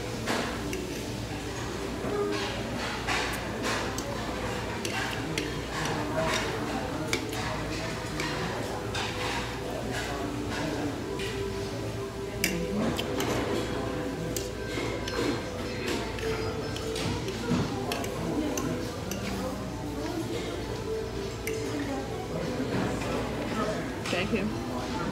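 Restaurant dining-room ambience: background music and indistinct chatter, with many short clinks of forks on ceramic plates.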